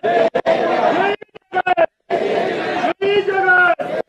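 Several people's voices talking over one another, in loud chunks broken by abrupt drops to silence.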